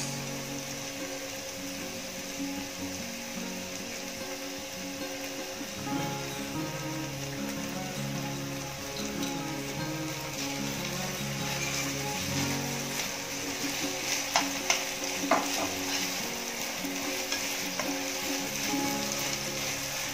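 Onions, capsicum and green chillies sizzling steadily in a nonstick frying pan as tomato chilli sauce is stirred in with a steel spoon. A few light clicks of the spoon against the pan come in the second half.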